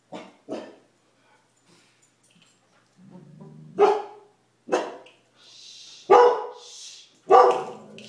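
Dogs barking and growling at each other in a scuffle: two short barks at the start, a low growl about three seconds in, then four loud barks roughly a second apart.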